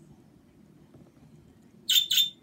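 Low room hum, then a single sharp, high-pitched chirp from a pet budgerigar near the end.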